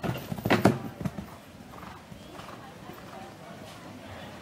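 A show-jumping horse cantering on arena sand close by. Its hoofbeats are loud in the first second, with a short loud cry about half a second in. The hoofbeats then drop to a low level as the horse moves away.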